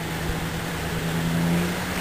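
Car engine running with a steady low hum and road noise, its pitch rising slightly in the second half.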